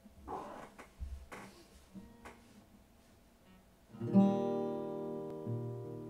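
Soft rustling and a few light knocks as an acoustic guitar is handled. About four seconds in, a chord is struck on the steel-string acoustic guitar and left ringing, slowly fading.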